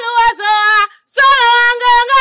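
A woman's high voice singing long held notes with a slight waver, in two phrases with a brief pause about a second in.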